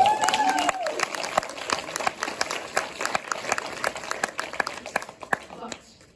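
Audience applauding, opened by one voice cheering on a rising-then-falling note in the first second; the clapping thins out and fades toward the end.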